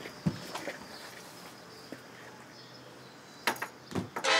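Quiet background ambience in a pause, with a soft low thump just after the start, a few faint clicks, and a short noisy burst shortly before the end.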